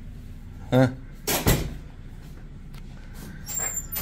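A loud clunk about a second and a half in, over a steady low hum. A fainter scrape follows near the end.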